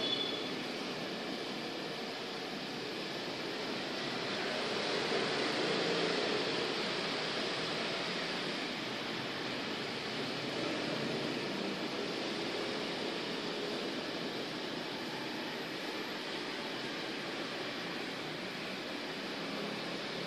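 Steady background noise, an even hiss-like room tone that swells slightly about five to seven seconds in.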